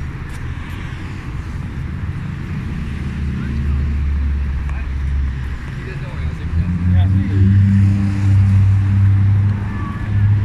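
Busy street traffic: motor vehicle engines running close by, growing louder in the second half, over general city street noise.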